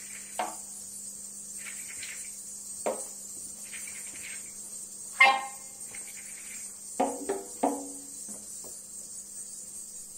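Sparse free-improvised saxophone-and-percussion music. Sharp knocks or strikes ring briefly, the loudest about five seconds in and three in quick succession around seven seconds. Beneath them are faint soft chirping sounds recurring about once a second and a steady low hum.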